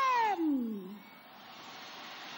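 A sung voice finishes a held note with a long downward slide in pitch, fading out within the first second. After it comes a faint, steady stadium crowd noise.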